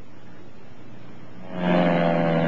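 Faint steady hiss, then about one and a half seconds in a steady, level buzzing tone starts and holds without changing pitch.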